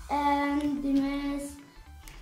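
A boy's voice drawing out a single vowel at a nearly level pitch for about a second and a half, a sing-song, long-held syllable in slow reading aloud.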